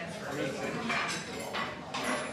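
Restaurant background: indistinct chatter of other diners with a few light clinks of dishes and cutlery.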